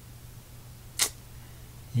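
A single short, sharp click about a second in, over a steady low electrical hum.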